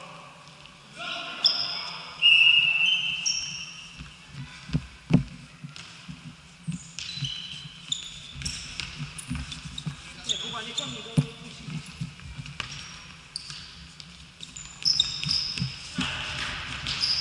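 Futsal game play on an indoor hall floor: sharp thuds of the ball being kicked and bouncing, short high squeaks of sneakers on the court, and players' shouts, all ringing in the large hall.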